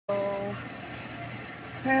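A person's voice: a short, steady held vocal sound at the start, then the beginning of a spoken 'hello' near the end.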